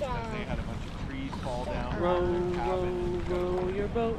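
A voice sings or hums wordless notes, gliding at first and then holding long, steady notes through the second half. Under it runs a steady low rumble of wind and water noise on the microphone.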